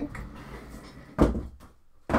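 Rummaging through boxes: dull low thumps and handling noise, with one heavier thump a little over a second in.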